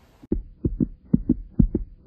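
Heartbeat sound effect: paired lub-dub thumps repeating about twice a second, starting suddenly about a quarter second in.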